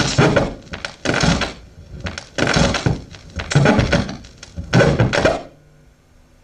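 Turntable stylus worked by hand on a spinning vinyl record, giving bursts of harsh scratchy noise about once a second, five in all, then stopping shortly before the end.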